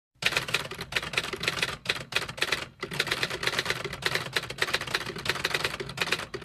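Rapid typewriter key clicks, a fast run of sharp strikes with two short pauses in the first three seconds.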